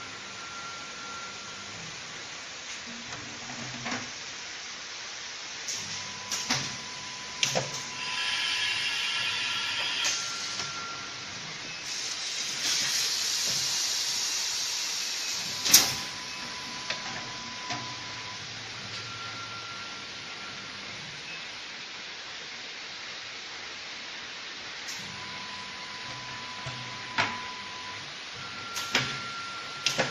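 Heat transfer machine for 5-gallon plastic water bottles at work: a steady hiss with clicks and clunks from its mechanism and several short beeps. There are two louder stretches of hissing, and the sharpest clunk comes about halfway through.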